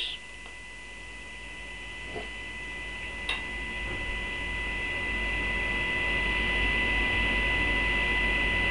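Steady electrical mains hum with thin whining tones, growing gradually louder, and two faint clicks a few seconds in.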